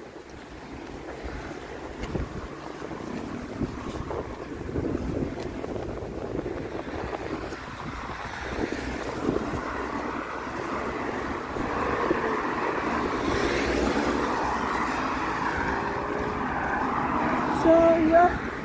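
Outdoor street noise: wind on the microphone and road traffic going by. The rush builds up over the first dozen seconds and stays loud to the end.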